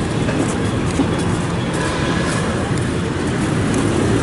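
Steady rumble of nearby motor traffic, with a low engine hum.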